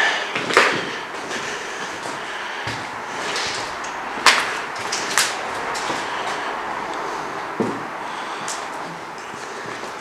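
Footsteps scuffing and crunching over debris on a floor, with a few sharp knocks, over a steady background hiss.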